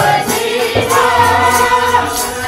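Sikh kirtan: a group of men singing a shabad together over a hand-pumped harmonium, voices and reed chords held and sliding between notes.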